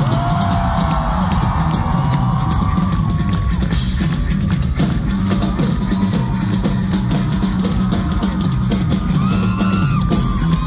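Rock band playing live: a hard-hit drum kit driving the beat under bass and electric guitar lines, heard from within the crowd in a large hall.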